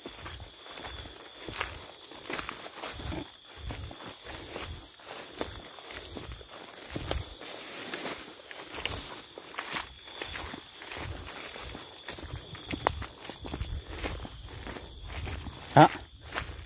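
Footsteps of a person walking through tall grass and undergrowth, a soft step roughly every half second to second at a steady walking pace.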